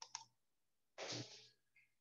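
Near silence, with two faint short clicks at the very start and a short, soft rush of noise about a second in.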